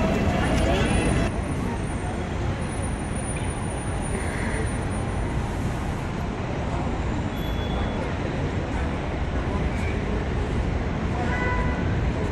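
Steady outdoor city background: a continuous low rumble of road traffic with faint voices of passers-by.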